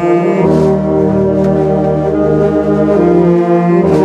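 A wind band of saxophones, trumpets and tuba playing sustained chords, with the tuba's low bass notes underneath. The bass drops out briefly near the start and again just before the end.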